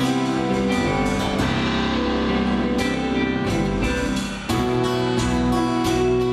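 Live band playing an instrumental passage with strummed acoustic guitar, electric guitar and keyboard. The sound dips briefly about four and a half seconds in, then comes back fuller on a new chord.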